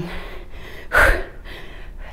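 A woman's single sharp exhale about a second in, a forceful breath out with the effort of a dumbbell squat rep.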